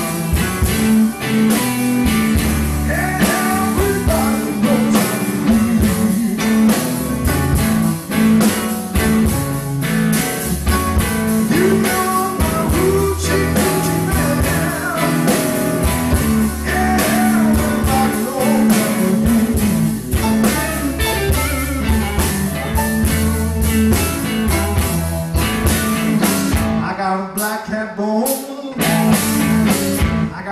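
Blues band playing live, with electric guitar, electric bass, drums and keyboard, in an instrumental passage: bending guitar lines over a steady bass and drum groove. Near the end the drums drop out for a few seconds.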